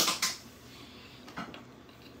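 Faint chewing of deep-fried liver, with a few soft mouth clicks and smacks.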